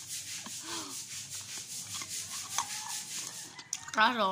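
A person chewing a mouthful of food close to the microphone, a steady run of soft crunches about five a second.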